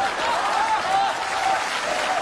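Theatre audience applauding steadily after a punchline.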